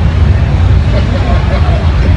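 A loud, steady low rumble, with faint voices in the background.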